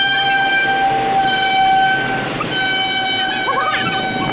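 A horn sounding one long, steady, high note, broken briefly about two seconds in and then resuming. Voices shout near the end.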